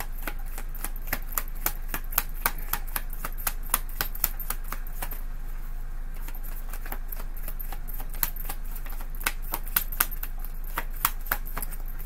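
A deck of tarot cards being shuffled by hand: a steady run of light card snaps, about three a second, thinning out briefly around the middle. A faint steady low hum runs underneath.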